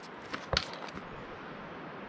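Steady hiss of distant running water, spring meltwater coming down off the mountainside, with a few light clicks in the first second.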